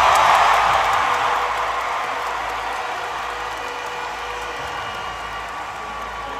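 Large arena audience applauding and cheering at the end of a contestant's answer, loudest at the start and slowly dying away.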